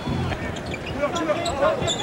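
Televised basketball game audio: an arena crowd and voices, with a basketball being dribbled on a hardwood court.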